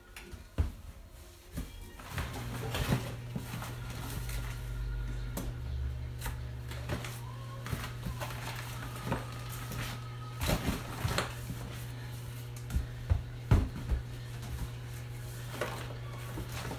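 Irregular knocks, clicks and rustles of drink bottles and cardboard being handled and packed into a cardboard box, over a steady low hum that starts a couple of seconds in.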